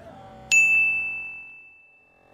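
A single bright chime-like ding struck about half a second in and left to ring, fading away over about a second and a half, with softer lower notes held underneath. It is an added editing sound effect, not a sound from the track.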